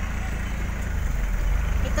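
Steady low rumble of a vehicle's running engine, heard from inside its cab.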